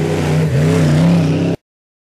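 Off-road hill-climb buggy's engine revving hard under load, its pitch dipping about half a second in, then rising and wavering. The sound cuts off suddenly near the end.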